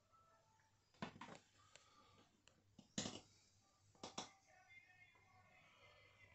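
Near silence broken by a few sharp knocks. There is a short cluster about a second in, the loudest knock about three seconds in, and a quick double knock a second after that.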